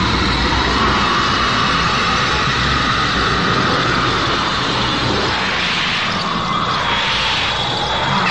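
A film sound effect: a loud, steady rushing noise like a strong wind or jet, with no words.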